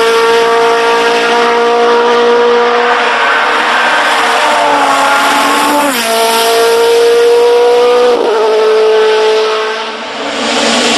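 Hillclimb sports-prototype racing engine running hard at high revs, holding a steady high note. Its pitch drops and jumps sharply twice, about six and eight seconds in, as the gears change.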